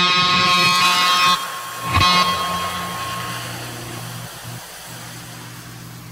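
EVH Shark electric guitar played loud with distortion through an amplifier; the playing breaks off about a second in, one more struck hit comes around two seconds in, then the amp's steady hum and hiss as the notes die away.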